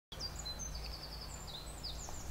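Small birds chirping and whistling, with a quick run of repeated high notes about half a second in, over a steady low outdoor rumble.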